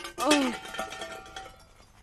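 A short groan falling in pitch from someone who has just fallen, then a faint ringing that dies away about a second and a half in.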